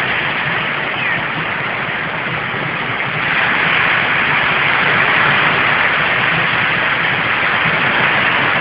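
Beach ambience: a loud, steady rushing noise of wind and surf, swelling a little a few seconds in.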